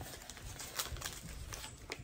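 Foil wrapper of a Pokémon trading card booster pack crinkling and tearing as it is opened by hand, a run of faint crackles.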